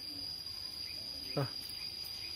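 A steady, high-pitched insect drone: one unbroken tone that does not waver.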